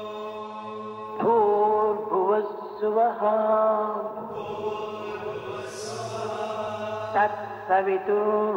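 A solo voice chanting a devotional mantra in long, held notes over a steady drone, the voice coming in about a second in.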